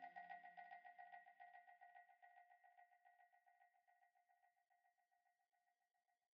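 Faint tail of an electronic music loop fading out: a high synth note repeating in quick even pulses, dying away to near silence by the end.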